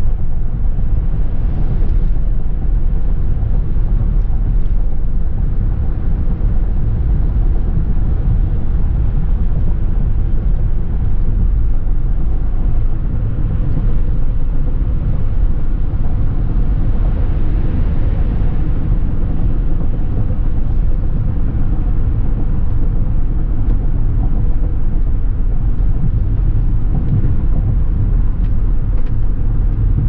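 Road and engine noise heard inside the cabin of a vehicle driving at freeway speed: a steady low rumble with a fainter hiss above it.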